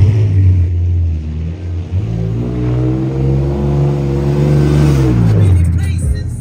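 Vehicle engine accelerating: a steady engine note for the first couple of seconds, then its pitch climbs for about three seconds and drops away near the end.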